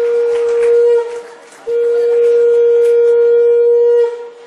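A conch shell (shankha) blown in two long, steady blasts at one pitch. The first blast tails off about a second in, and the second begins after a short breath and is held.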